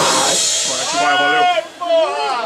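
The last hit of a death metal song, with drums and cymbals ringing out and dying away within about half a second. Then several voices shout and whoop loudly.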